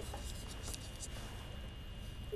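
Faint steady hiss and low hum of a telephone line in a pause between a caller's words.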